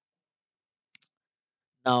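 Near silence with a single faint, brief click about a second in, then a man's voice begins speaking near the end.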